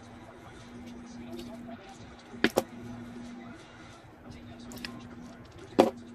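Craft-table handling noises while ribbon is folded and glued: two sharp double clicks about three seconds apart, over a steady low hum.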